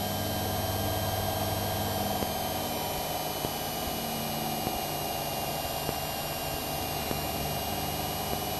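Citabria's engine and propeller droning steadily in the cockpit during an aileron roll, with a faint high whine that dips slightly in pitch about halfway through. The low engine note steps down a little about three seconds in, as the plane goes inverted.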